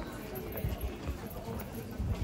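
Footsteps on brick paving while walking, heard as a few low thuds.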